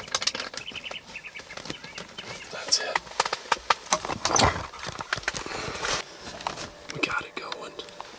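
Rustling of the pop-up ground blind's fabric and irregular plastic and metal clicks as an Ozonics ozone unit is mounted on a blind bar, with a louder scrape about four and a half seconds in.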